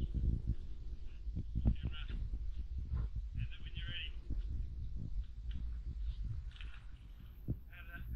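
Several short, wavering high-pitched vocal sounds, quiet voices or laughter, over a steady low rumble.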